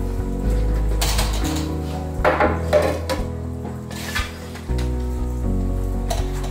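A metal loaf pan knocking and rattling against a wire cooling rack as baked bread is turned out of it: a few short clatters, the loudest about two and a half seconds in, over background music.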